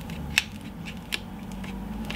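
Small metal palette knife spreading cellulose paper paste over a plastic stencil: faint scraping and squishing, with a couple of sharp clicks as the blade knocks the stencil, one about a third of a second in and another just past the middle.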